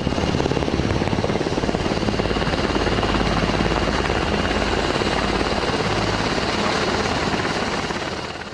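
A helicopter's rotor and engine, running steadily.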